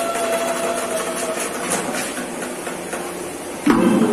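Improvised percussion: sticks tapping on plastic buckets, tins and a plastic drum in a quick, dense patter, breaking into loud beats near the end. A held melodic note sounds over the first second or so.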